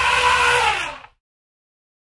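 African elephant trumpeting: one brief, loud call whose pitch rises and falls in an arch, ending about a second in.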